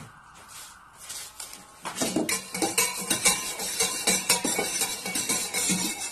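A spoon stirring quickly in a mug, with fast, irregular clinking of metal on the cup that starts about two seconds in.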